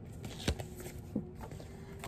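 Light handling sounds of paper shipping labels and packing slips: a sharp click about half a second in and a softer one just past the one-second mark, with faint rustling between.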